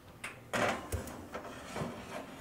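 A pizza pan sliding out over a metal oven rack: a scraping rub that starts sharply about half a second in, with a soft knock about a second in.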